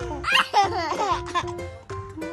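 A baby laughing in a run of quick, high-pitched bursts from shortly after the start to about halfway through, over background ukulele music.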